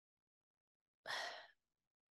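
A woman's single short breath, about a second in, taken in a pause between phrases of speech.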